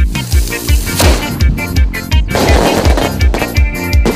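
Lambadão-style election campaign song with a steady bass beat about three times a second. A sharp crash about a second in, then a wash of noisy hiss through the middle, plays over the beat.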